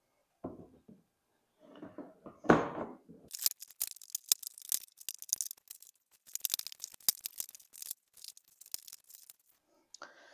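Plastic golf-cart front body cowl being handled and set into place: a few soft knocks and a louder thump about two and a half seconds in, then several seconds of quick crackling clicks as the plastic shifts and seats.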